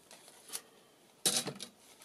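Hands handling a thick fabric-and-paper junk journal: a faint click about half a second in, then a short, louder rustle of paper and card just past the middle.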